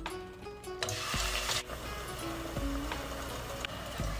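Background music playing over deep-frying: a burst of sizzling about a second in, as a basket of once-fried fries goes into the hot oil for their second fry, settling into a fainter steady sizzle.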